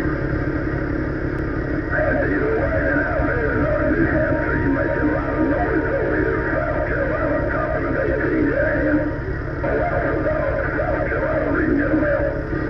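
A strong skip signal from a distant station on CB channel 18 coming through the truck's CB radio speaker, carrying music with guitar in a narrow, tinny band. The truck cab's low drone runs underneath.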